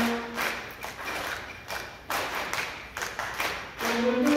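A school concert band's held wind chord cuts off about half a second in. Irregular percussion strokes follow, drum and cymbal-like hits about two a second, before the winds come back in.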